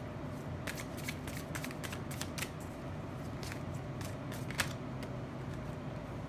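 A tarot deck being shuffled by hand: a scatter of short, irregular card clicks and snaps, one a little sharper about four and a half seconds in.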